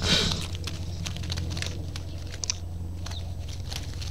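Trapped house sparrows moving inside a wire-mesh funnel trap, heard as a brief rustle at the start, then scattered light clicks and scuffs over a steady low hum. The audio is sped up to double speed.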